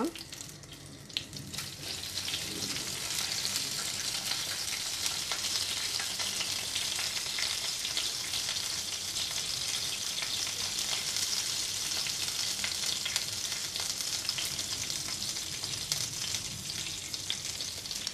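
Mustard seeds, urad dal, whole chillies and curry leaves frying in hot coconut oil in a clay pot: a steady sizzle with fine crackling from the spluttering seeds. It builds up over the first couple of seconds as the curry leaves go in.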